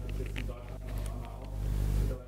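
Speech over a steady low electrical hum, with a few light clicks in the first second.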